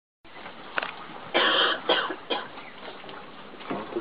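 A person coughing several times near the microphone: a string of short, harsh coughs, the second the loudest and longest, over a steady background hiss.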